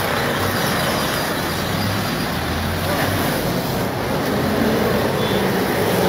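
A steady hiss of air escaping from a lorry's tyre as it is let down.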